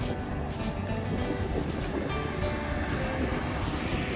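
Music with a steady beat, over the low rumble of an early Chevrolet Corvette convertible driving slowly past.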